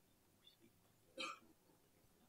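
Near silence: room tone, broken once a little past a second in by a single short, sharp sound.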